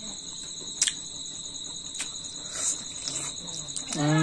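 Crickets trilling steadily in a high, continuous chorus, with one sharp click a little under a second in.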